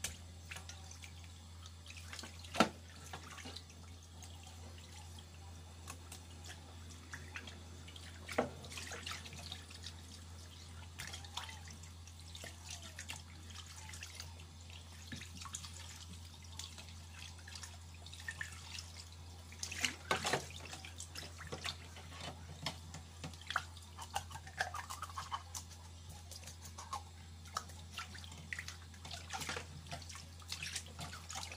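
Water splashing and dripping in a stainless-steel sink as fish are handled and rinsed by hand, with scattered sharp clicks and knocks, the loudest about two and a half seconds in. A steady low hum runs underneath.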